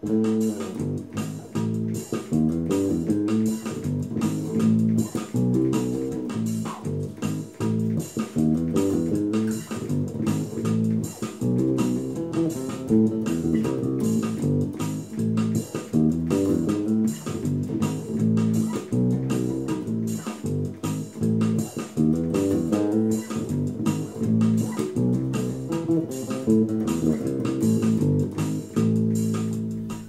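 Tagima Millenium electric bass with Elixir strings, fingerpicked in a repeating forró groove, over a steady backing beat.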